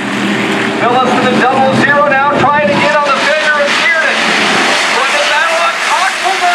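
A pack of dirt-track hobby stock race cars running together, several engines overlapping, their pitch rising and falling as the drivers lift and get back on the throttle.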